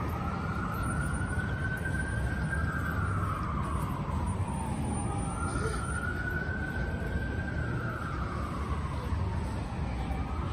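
Emergency vehicle siren in a slow wail, rising and falling about every five seconds, over a low rumble of street traffic.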